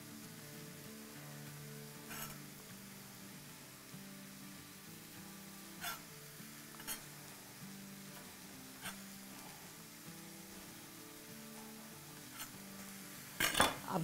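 Soft background music with about five scattered sharp knocks of a chef's knife on a cutting board as spring onions are sliced.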